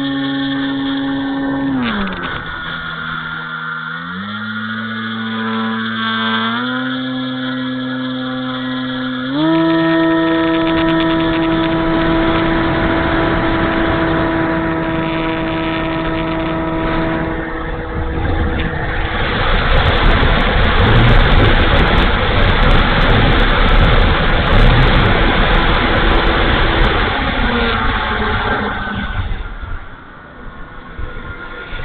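Electric motor and propeller of an E-flite Timber RC floatplane, heard through its onboard camera. The pitch steps up and down with the throttle, then jumps at about ten seconds to a steady high whine at full throttle for the takeoff from snow. Later a loud rushing noise from the airflow covers it, and near the end the motor pitch drops as the throttle comes back.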